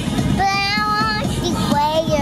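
A young girl singing two high notes in a small child's voice, the first held for most of a second, the second starting near the end.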